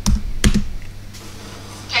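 Two sharp taps on a computer keyboard about half a second apart.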